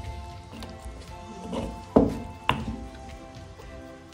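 Background music with sustained notes over a stone pestle working salsa in a volcanic stone molcajete. The pestle knocks against the stone twice, sharply, about halfway through.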